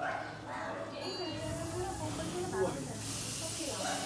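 People's voices talking, with no words made out. A steady hiss comes in about three seconds in.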